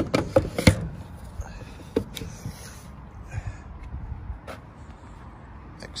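Charging connector of an Ionity rapid charger being pushed back into its holster on the charger: a cluster of hard plastic clunks and knocks in the first second, then a few light clicks over low background noise.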